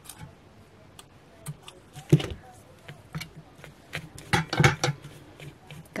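Scissors snipping at the loose threads of a frayed fabric bow: a scattering of short, sharp clicks, busiest about two seconds in and again about two-thirds of the way through, with fabric handling between cuts.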